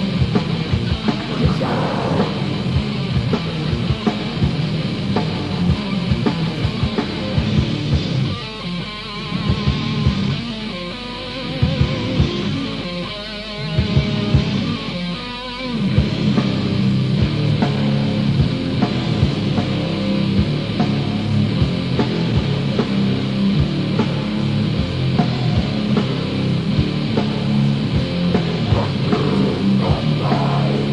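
Old-school death metal from a 1990 demo recording: heavily distorted guitars, bass and fast, dense drums. A thinner passage with fewer drum hits runs from about 8 to 16 seconds in, then the full band comes back in.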